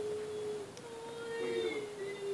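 The animated fish Dory's voice from a television, stretching out long, drawn-out vowel sounds in her mock 'whale-speak': two held notes, the second lasting about a second, each sliding a little in pitch.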